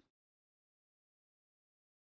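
Silence: the sound track is blank.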